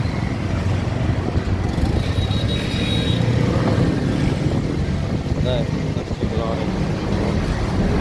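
A motor vehicle engine running steadily with a low hum.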